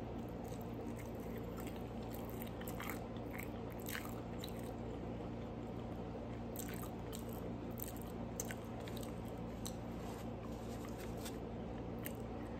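A person biting and chewing a cheeseburger: faint, irregular mouth clicks and crunches over a steady low hum.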